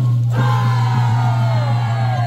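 A drum stroke, then a group of children shouting together in one long cry that slides down in pitch, over a steady low hum.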